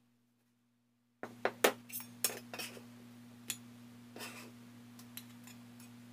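A kitchen knife knocking on a plastic cutting board and clinking against a glass bowl as diced tomatoes are moved off the board into the bowl. A quick run of sharp taps starts about a second in, the loudest among the first few, followed by scattered single knocks and short scrapes.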